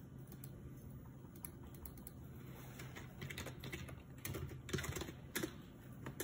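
A run of irregular light clicks, sparse at first and then quicker and louder from about halfway, over a low steady hum.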